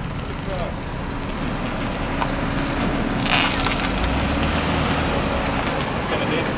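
Steady outdoor vehicle and traffic noise, with a low engine hum through the middle and a short hiss about three seconds in.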